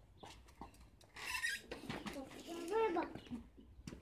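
Children's voices, indistinct and away from the microphone, after a few light clicks in the first second.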